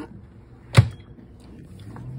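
Air fryer oven's door being shut: one sharp clack a little under a second in.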